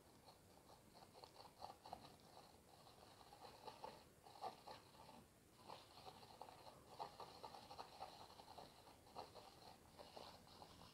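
Very faint, irregular scratching and tapping of an oil-paint brush dabbing white highlights onto canvas.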